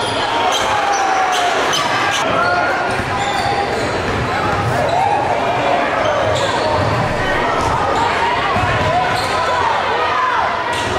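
Basketball game sound in a gym: the ball bouncing on the hardwood floor in repeated low thumps, with players' and spectators' voices echoing in the hall.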